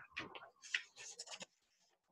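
Faint rustling and light scratches of a hand moving on notebook paper, a few short sounds that stop about one and a half seconds in, leaving dead silence.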